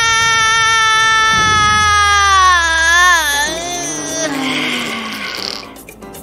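A woman's long scream held on one high note, which wavers and falls in pitch about three seconds in and dies away. A short hiss follows.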